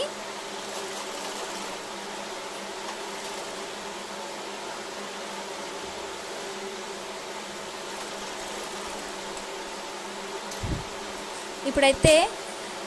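Sewing machine running as it stitches a seam through dress fabric and lining, a steady even hum, with a single low thump near the end.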